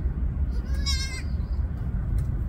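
A goat gives a single short, high-pitched, wavering bleat about a second in, over a steady low rumble.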